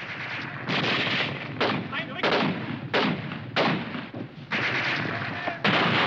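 Battle gunfire from an old war-film soundtrack: rifle and artillery fire, about seven blasts in six seconds, each dying away over a fraction of a second.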